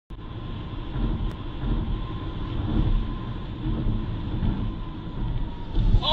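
Steady low rumble of a moving car heard from inside the cabin: engine and tyre noise on the highway picked up by the dashcam, with a faint thin whine. The sound starts abruptly right at the beginning.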